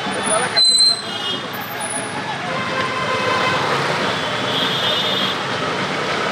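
Busy street traffic noise around a slow-moving road procession: vehicles running, with indistinct voices in the background. A short, louder burst comes just under a second in.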